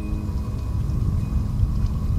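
Wind buffeting the microphone, giving an uneven low rumble, under soft background music with sustained held notes.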